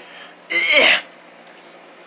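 A person's single short, breathy vocal burst about half a second in.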